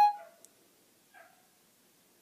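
Siri's chime on an iPhone 4S: a short electronic two-note tone stepping down in pitch at the very start, the signal that Siri has stopped listening to dictation. A faint brief sound follows about a second in.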